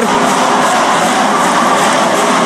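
Ice hockey arena crowd noise: a loud, steady roar of many voices.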